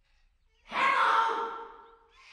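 A long, breathy cartoon sigh starting just over half a second in and fading away over about a second.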